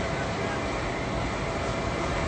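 Steady outdoor background noise picked up by a phone's microphone: an even rushing hiss with no distinct events.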